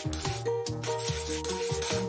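A highlighter's felt tip rubbing across paper in a series of short wavy strokes, over background music.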